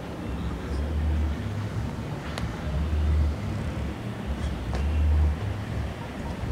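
Wind buffeting the camera's microphone in gusts, a low rumble that swells and drops every second or two.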